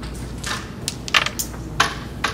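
A carrom striker is flicked into the carrom men, giving a quick series of sharp clacks as the discs hit each other and the board's rails. The loudest clacks come about a second in and near the end.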